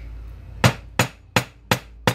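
Hammer striking anodized aluminum wire on a metal bench block: four sharp metal-on-metal taps, about three a second, starting about half a second in. The blows are flattening and spreading the end of the wire to taper it to a point.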